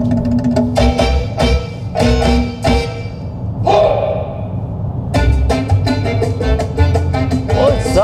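Music playing through the KGM Musso EV's factory sound system, heard inside the cabin: a song with sharp percussion hits, sounding okay but lacking the deep bass.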